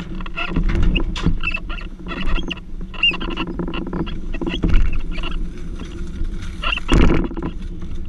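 Briggs & Stratton LO206 single-cylinder four-stroke kart engine idling with a steady low note as the kart rolls slowly over pavement, with the chassis clattering and knocking and a heavier thump near the end.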